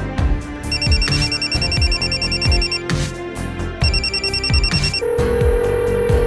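Electronic telephone ring, a rapid warbling trill in two bursts with a short gap between, heard as the call rings out, over background music with a steady beat. A steady held tone takes over about a second before the end.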